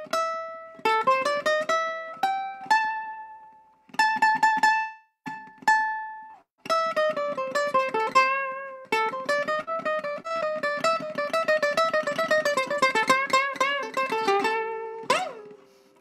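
Ukulele played solo: a few single picked blues notes with short gaps, then a fast run of notes from about seven seconds in. Near the end one note is bent up and back down.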